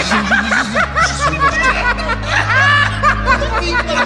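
Laughter, a run of short rising-and-falling laughs, over background music with a steady low bass tone.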